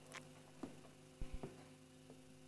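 Faint handling noises as a man gets up from a sofa and gathers his things from a low table: a few soft knocks, then two or three low thumps a little past the middle, over a steady faint electrical hum.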